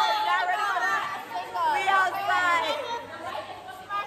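Several women's voices shouting and chattering over one another close to the microphone, with background chatter.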